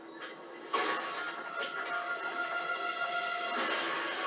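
Television soundtrack: music from the episode, starting with a sudden hit about a second in after a quieter moment, then held steady tones.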